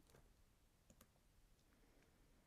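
Near silence, with two faint computer mouse clicks close together about a second in.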